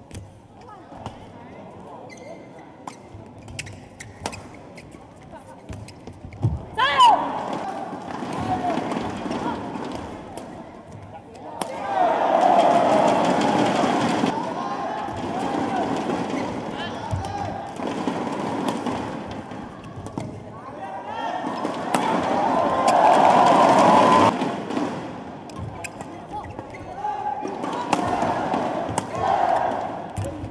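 Badminton rally: sharp clicks of rackets hitting the shuttlecock and shoes squeaking on the court, with a rising shout about seven seconds in. A crowd cheers and shouts loudly twice, about twelve seconds in and again about twenty-two seconds in, as points are won.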